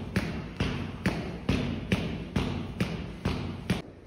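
Medicine ball tapping the floor mat on alternate sides during fast Russian twists: a steady run of thuds, about two a second.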